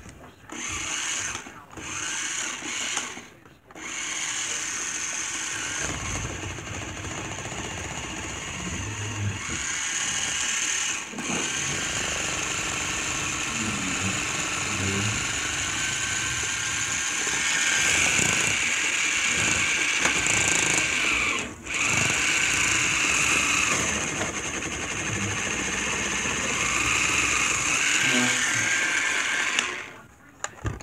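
A small motor whirring steadily. It starts about four seconds in and runs on, with a brief break about two-thirds of the way through.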